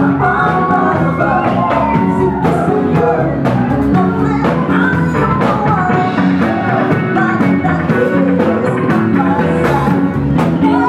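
Upbeat rock-and-roll dance song played by a live band, with a singer over drums and guitar, at a steady loud level.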